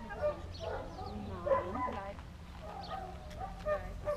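Puppies barking and yapping in short calls, a few sharper yaps standing out, over indistinct voices of people talking.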